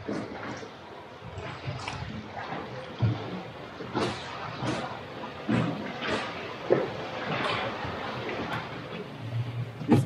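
Sea water sloshing and lapping against rock walls and the boat's hull, with irregular small splashes.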